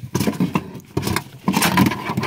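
Rear seat belt webbing and its metal buckle being pulled out from under the rear seat cushion: rustling and scraping with small clinks, in two stretches.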